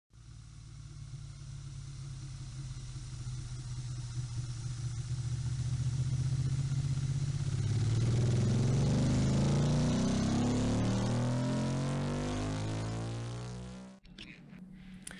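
A vehicle engine running that fades in, then revs up with rising pitch from about halfway through, and cuts off suddenly at the end.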